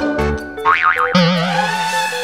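Cartoon background music with a springy boing sound effect whose pitch wobbles rapidly up and down, starting a little over half a second in.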